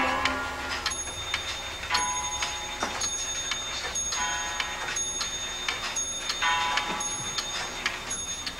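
Weight-driven pendulum clock ticking steadily, about one tick a second, each tick a sharp click with a brief metallic ring.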